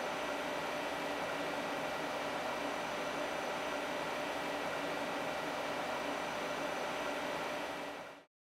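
Steady hiss and hum of a CNC turning center standing under power, its fans and hydraulic unit running, with a faint high steady whine. The axes are held by machine lock, so there is no cutting or axis travel.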